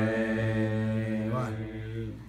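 A man singing unaccompanied, holding one long low note that breaks off about one and a half seconds in, his voice then trailing away.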